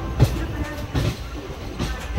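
Passenger train running through the station yard, heard from the open coach door: a steady low rumble of wheels on rail, with three sharp knocks from the wheels striking rail joints, the first the loudest.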